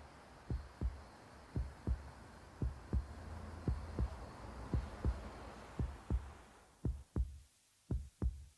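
A slow heartbeat: low double thumps in pairs, about one beat a second, over a soft hiss that fades out near the end.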